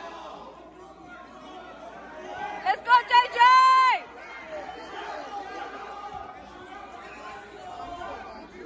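Spectators' low chatter with one loud shout of encouragement about three seconds in, held for about a second.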